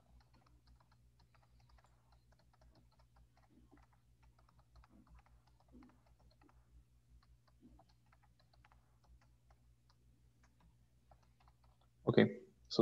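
Faint typing on a computer keyboard: a steady run of quick, light keystrokes over a low steady hum.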